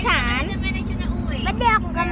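Steady low rumble of a passenger vehicle heard from inside the cabin, with a steady hum under it, while children's high voices and laughter sound over it.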